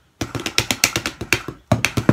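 Wooden drumsticks striking a plastic-wrapped practice pad in a quick run of strokes, about seven or eight a second and unevenly accented, with a brief break partway through: a swung shuffle pattern.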